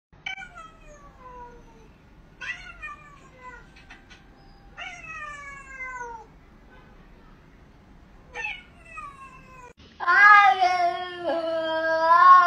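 A domestic cat meowing: five drawn-out meows, each falling in pitch, then a much louder, long wavering yowl starting about two seconds from the end.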